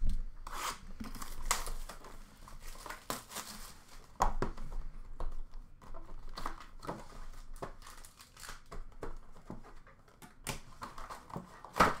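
Plastic shrink wrap being torn and crinkled off a sealed trading-card hobby box, in irregular bursts of crackling and rustling, louder about four seconds in.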